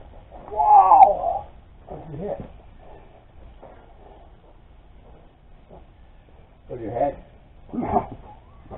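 A man groaning and crying out in pain after striking his head on the sawmill head: a loud drawn-out groan about a second in, a shorter one after it, then two more near the end.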